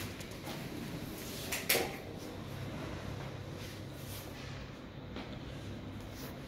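A single sharp knock or clack about a second and a half in, over a low steady hum.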